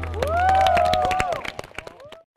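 Live audience cheering and clapping at the end of a song, with shouted cheers rising and falling over scattered claps. The last held chord of the music fades out at the start, and the cheering dies down after about a second and a half.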